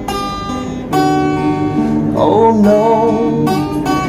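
Acoustic guitar with a capo being played, chords ringing, with a fresh chord struck about a second in.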